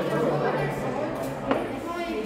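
Overlapping chatter of many children's voices in a large, echoing classroom, with one sharp click about one and a half seconds in.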